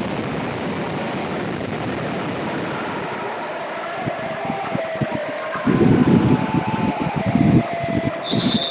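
Steady, echoing noise of an indoor sports hall during a volleyball match, with a couple of short louder noises about six and seven and a half seconds in.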